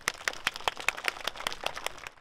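A small audience applauding: many scattered, irregular hand claps.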